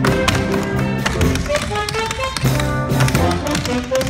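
Tap dancers' shoes clicking on the stage in quick rhythmic patterns over loud show-tune music.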